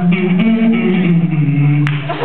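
Beatboxer's voice holding low, pitched notes that step down in pitch, with a single sharp click near the end.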